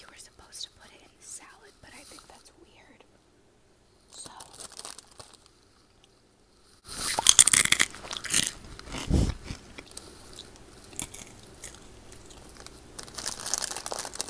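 A crunchy snack being bitten and chewed close to the microphone: small mouth clicks at first, then a loud crunch about seven seconds in, a dull thump, quieter chewing, and more crunching near the end.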